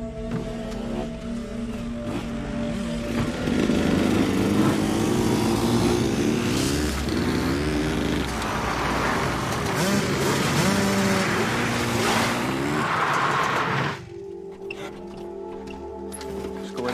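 Several dirt bike engines revving, their pitch rising and falling, over background music. The engine sound stops suddenly about two seconds before the end.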